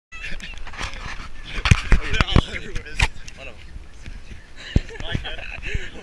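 Snow being scooped off a car and packed by hand into snowballs: a run of sharp crunches, thickest in the first half, over a steady low rumble of wind on the microphone.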